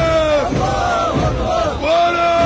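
A large crowd of marchers shouting slogans together in a rhythmic chant, each call held and then falling away before the next.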